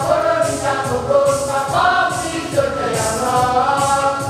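A group of young women's voices singing a hymn together in long held notes, with a tambourine jingling on the beat.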